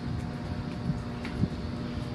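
Steady low outdoor rumble with a faint constant hum, and a few soft knocks, the sharpest about one and a half seconds in.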